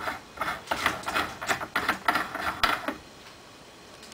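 Irregular metal clicks and scrapes from a heavy single-stage reloading press for .50 BMG as its ram is brought up and the steel trim die is worked in the press's threaded top. The clicks stop about three seconds in.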